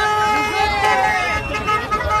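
A horn held on one steady tone while a crowd shouts and calls over it.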